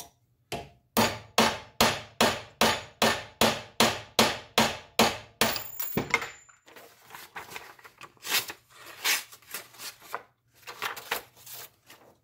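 A hammer striking a carbon-steel knife blade whose edge is set on a metal rod on an anvil: a steady run of sharp metallic blows, about three a second for some five seconds, in a test of the edge's shock resistance. After that, lighter irregular clatter of tools being handled.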